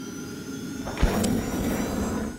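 Logo-animation sound effect: a swelling whoosh, then a sharp hit about a second in with a bright shimmer on top, ringing on.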